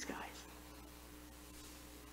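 A woman's spoken word trails off at the start, then a pause of faint room tone with a steady low hum.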